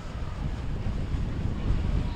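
Wind buffeting the microphone: an uneven low rumble that rises slightly toward the end.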